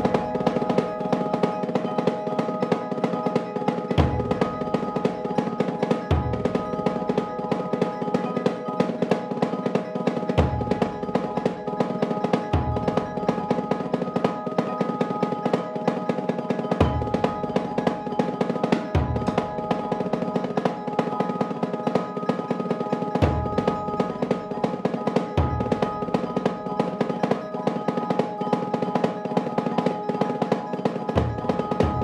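Percussion ensemble playing: marimbas and keyboard percussion sound continuous repeating patterns over a snare drum. Low strokes on a large barrel drum come in pairs about two seconds apart, each pair about six seconds after the last.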